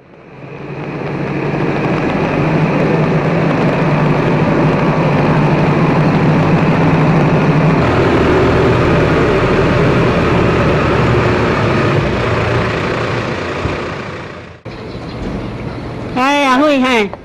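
Tractor engine running steadily, fading in over the first two seconds. Its tone shifts slightly about eight seconds in, and it drops away near the end.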